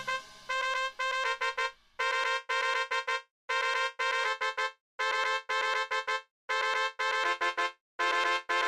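MIDI-synthesised brass fanfare. The same short figure plays five times, each a held note followed by a quick run of short repeated notes, with brief silences between.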